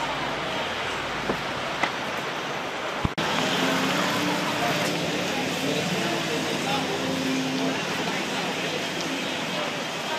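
Busy city street ambience: steady traffic noise with indistinct chatter from passers-by. The sound breaks off abruptly about three seconds in and resumes slightly louder.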